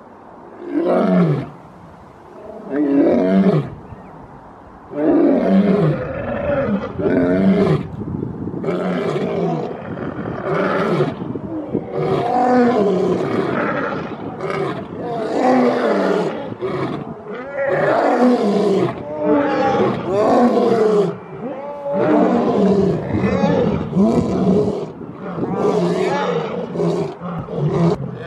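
Two male lions roaring together in a long bout. A couple of separate calls come first, then from about five seconds in a steady run of overlapping calls, roughly one a second, many of them sliding down in pitch.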